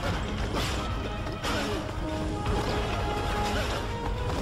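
Animated film soundtrack: music with mechanical sound effects over it, a run of clicks and knocks that creak like a moving mechanism.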